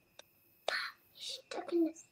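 Quiet, whispered speech in short breathy fragments, with a small click just after the start.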